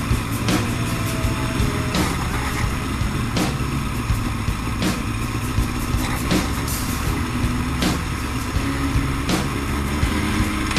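Yamaha R1 sportbike's inline-four engine running at low revs in a low gear while riding slowly, with steady wind and road noise on the bike-mounted microphone. Short knocks come through at irregular intervals.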